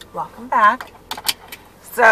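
A woman's voice in a car cabin making two short sounds, then about five quick, sharp clicks in the second half.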